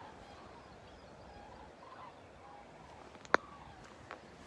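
Faint, scattered bird calls, short notes heard over quiet outdoor background. A single sharp click about three seconds in.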